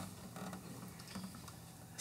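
Quiet room with faint creaking and small handling noises.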